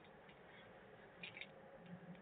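Near silence: faint room tone with a few small, soft clicks about a second in.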